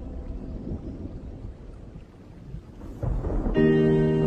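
Gap between two songs in a slowed-and-reverbed lofi mashup, filled with low rumbling noise like rain and distant thunder that fades and swells again. Sustained synth-pad chords of the next song come in near the end.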